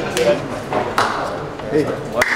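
Voices talking in a busy canteen, with two sharp clinks or slaps, the second one louder and ringing briefly about a second in.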